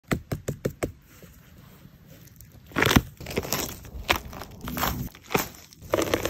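A quick run of about six light taps on a firm mushroom in the first second, then a loud crunching about three seconds in as the mushroom is squeezed and broken, followed by scattered sharp snaps and crackles.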